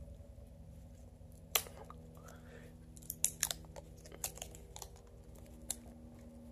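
Duct tape being bitten and torn with the teeth and wrapped around a plastic lighter: scattered short crackles and tearing sounds, the loudest about a second and a half in, with a cluster of them around three seconds in.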